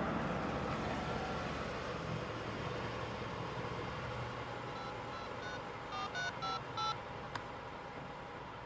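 A car driving off, its running noise slowly fading. Over it, a mobile phone's keypad beeps as a number is dialled: three spaced beeps, then four quicker tones, and a single sharp click near the end.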